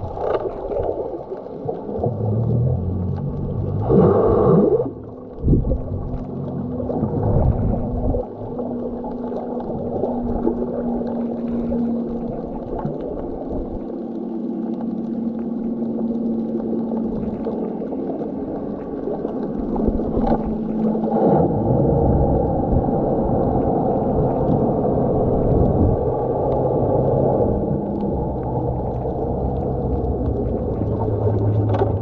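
Muffled underwater noise picked up by a snorkeler's submerged camera: churning water with a low steady hum, and a brief louder gurgle about four seconds in.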